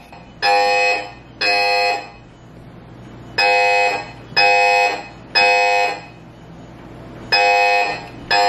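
Fire alarm sounding its three-beep evacuation pattern: beeps about half a second long, one a second in groups of three, with a short pause between groups. It was set off by smoke from cooking french fries.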